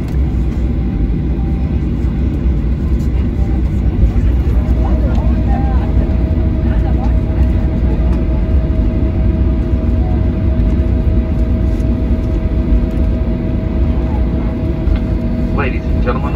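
Cabin noise of a Boeing 737-800 taxiing after landing, heard from a window seat over the wing. A steady low rumble comes from the CFM56 engines at taxi power and the airframe rolling on the taxiway. A steady whine comes in about five seconds in and holds.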